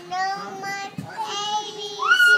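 A young girl singing two long held notes, with a short break between them about a second in.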